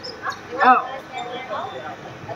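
A person's short, loud exclamation, like a sharp "oh!", its pitch rising and falling, a little after half a second in, over quieter voices.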